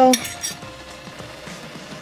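A spoon clinks against the rim of a stainless steel pot, one short ringing chink near the start.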